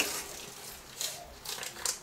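Margarine wrapper crinkling in a few faint, short rustles as it is peeled off the block.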